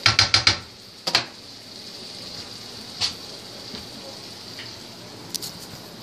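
A spatula clattering and scraping against a nonstick frying pan as vegetables are stirred in hot oil: a quick run of taps at the start, single knocks about a second and three seconds in, over a faint steady sizzle. A few light clicks come near the end.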